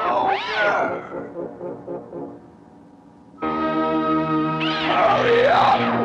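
Godzilla's roar from the film soundtrack, warped so its pitch swoops up and down like a record being rewound: this is how the monsters 'talk' in the film. About three and a half seconds in, a sustained brass-like music chord comes in, with another warbling roar over it.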